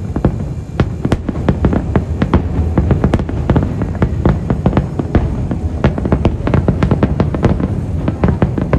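Rapid barrage of aerial firework shells bursting, several bangs a second one after another, over a continuous low rumble.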